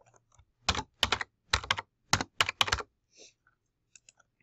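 Typing on a computer keyboard: a quick run of about ten keystrokes, starting just under a second in and stopping about a second before the end.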